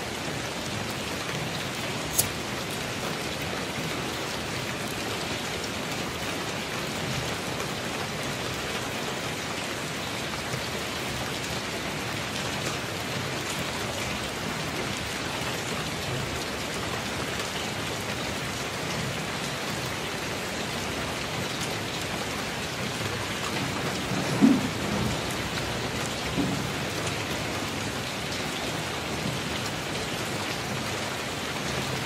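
Steady rain with no let-up. There is one sharp tick about two seconds in, and two brief, louder low sounds near the end.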